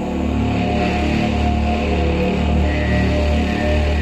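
Experimental electroacoustic music: a loud, sustained low drone with steady held tones above it, and a higher tone entering a little past halfway. It comes from an invented acoustic instrument played with live electronics.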